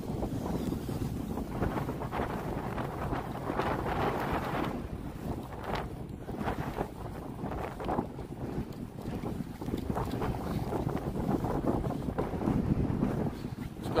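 Gusty wind buffeting the microphone: an uneven rushing noise that rises and falls in strength.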